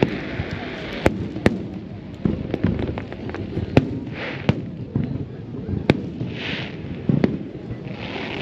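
Aerial fireworks shells bursting over open water: several sharp bangs a second or two apart, with smaller crackles and two brief hisses.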